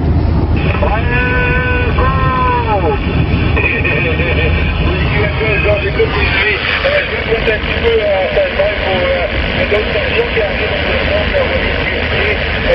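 CB radio receiver on the 27 MHz band giving out static hiss with weak, garbled, warbling voices of distant stations coming through, and a whistling tone about a second in. A steady low hum from the car on the road runs underneath.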